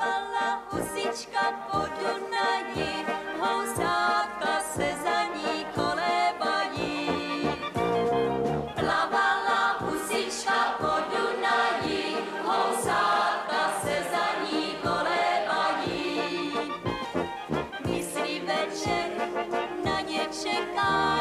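Brass-band music with a steady beat, brass instruments carrying the tune and a group of voices singing along.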